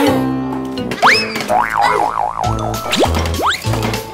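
Cartoon sound effects over upbeat children's background music: a quick rising whistle-like glide about a second in, then a wobbling boing for about a second, then two more quick rising glides near the end.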